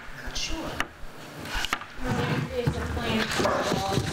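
Indistinct voices talking at a meeting table, with two sharp knocks in the first two seconds.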